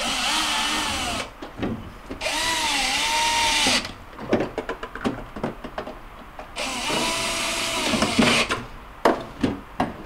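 Cordless drill with an extension bit driving screws into a refrigerator freezer's back panel, in three short runs. Its motor whine rises and falls in pitch during each run. Clicks and knocks of handling come between the runs.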